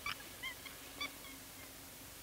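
Chimpanzee giving several faint, short, high-pitched squeaks in the first second and a half, the loudest about a second in.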